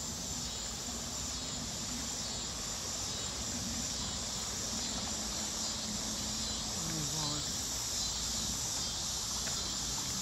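A steady chorus of insects chirring, with a low rumble underneath.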